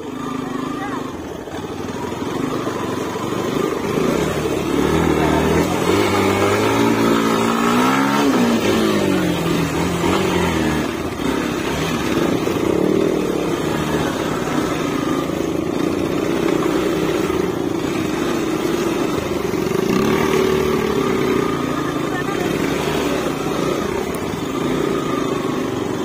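Motorcycle engine running under a low, uneven throttle through deep mud, its note rising and falling as the revs change, with a sharp dip and climb about eight seconds in.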